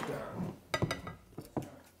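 Spoons clinking against glass and ceramic bowls at a table: a handful of short, light clicks, most of them between about half a second and a second and a half in.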